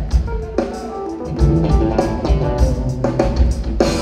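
Live jazz-funk band playing an instrumental: electric bass and drum kit driving a groove under keyboard chords, with regular drum hits.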